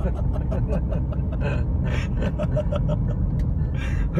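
Steady low rumble of a moving car heard from inside its cabin, with a man talking over it.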